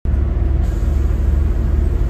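Volvo B7TL double-decker bus's six-cylinder diesel engine running, a steady low rumble heard from inside the lower deck, cutting in suddenly at the start.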